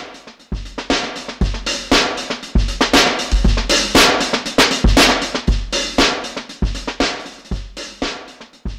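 Addictive Drums 2 sampled drum-kit loop of kick, snare and cymbals, playing through an EQ-based multiband compressor into a clipper. The makeup clip gain is turned up, so the beat gets louder and more squashed through the middle, then eases back as the gain is lowered.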